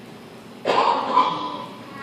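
A child's voice calling out loudly without words: one drawn-out, high-pitched cry that starts suddenly under a second in and fades away.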